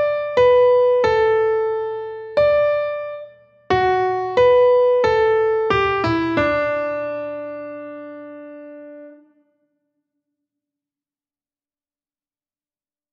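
Piano playing a single-line melody note by note: measures 13 to 16 of a melodic dictation exercise. There are about ten notes, with a short break a little after three seconds and a quick run near six seconds. The last note is held for about three seconds and dies away.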